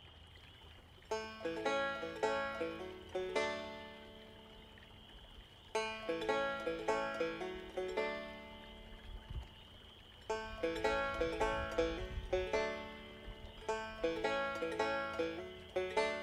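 Banjo picked in three short phrases of quick plucked notes, each note ringing briefly, with pauses between phrases where the notes die away.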